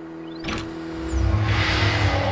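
Channel logo sting of motion-graphics sound effects: a sharp whoosh about half a second in over a held synth tone, then a loud low rumble swelling up near the end.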